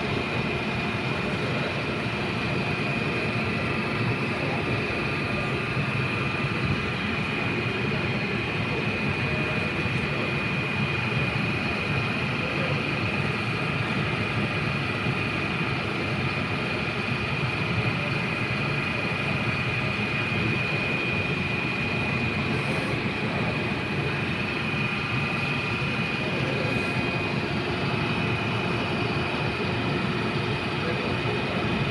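Steady rumble and hum of a light-rail train car or station, with a constant high-pitched whine over it.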